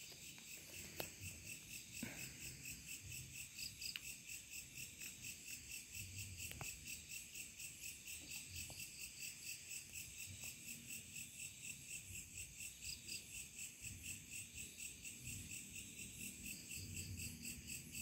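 Crickets chirping in a steady, even chorus, about four pulses a second, with a few faint clicks.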